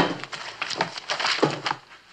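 A paper receipt book being handled and its pages leafed through: a sharp knock right at the start, then irregular rustling and light knocks of paper.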